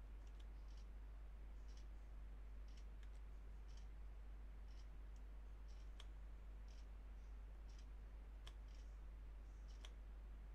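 Faint, short ticks about once a second, evenly spaced like a clock, a few with a second tick close behind, over a low steady hum.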